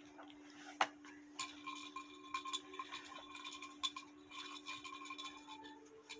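Brandy glass handled close to the microphone: irregular light clinks and ticks with a faint ringing, starting with a single click about a second in, over a low steady hum.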